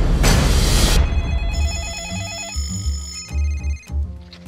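A loud burst of noise for the first second. Then a phone rings with a fast warbling ring, over trailer music with a low beat.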